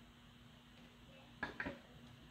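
Quiet room tone with a faint steady hum, broken about one and a half seconds in by a short cluster of sharp crackles from the clear plastic cover film of a diamond painting canvas being handled and lifted.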